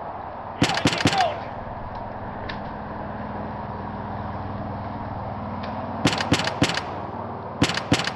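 Gunfire in quick bursts of sharp cracks: four rapid shots about half a second in, three more around six seconds, and two near the end, over a steady background hiss.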